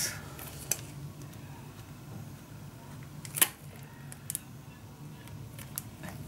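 A few light clicks and taps from plastic-sleeved metal cutting-die packages being handled, the sharpest about three and a half seconds in, over a steady low hum.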